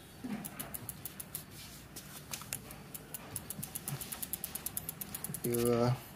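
Shimano rear hub's freehub ticking as the rear wheel turns: a run of light, quick clicks that grows denser and more even over the last few seconds.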